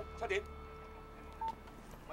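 Mobile phone keypad beep: a single short electronic tone about one and a half seconds in.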